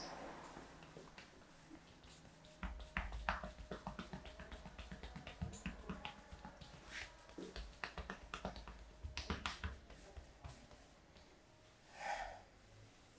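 Hands and fists tapping and pounding on a man's back through his shirt as part of a Turkish barber back massage. A quick run of soft taps and low thuds starts about three seconds in and stops a couple of seconds before the end.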